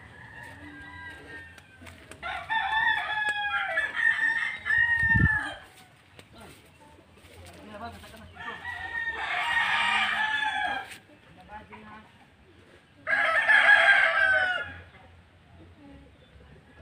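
Domestic rooster crowing three times, each crow about two seconds long and falling away at the end, several seconds apart. A short low thump comes about five seconds in.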